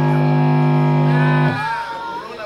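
A live rock band's amplified instruments holding one steady low note, which is cut off sharply about a second and a half in at the end of the song. Quieter crowd voices start right after.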